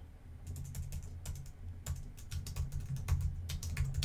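Typing on a computer keyboard: a run of irregular keystroke clicks over a low steady hum.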